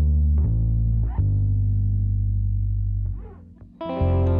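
Live band music without vocals: bass guitar notes under electric guitar with effects. The bass changes note twice, then holds a long note that fades almost away about three seconds in, and a full keyboard chord comes in just before the end.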